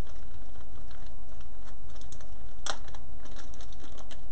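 Steady low electrical hum from the running equipment, with faint scattered clicks of handling and one sharper click about two-thirds of the way through, as the paper tape is fetched.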